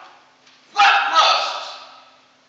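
A man preaching: a brief pause, then a loud, exclaimed phrase about three quarters of a second in that trails off.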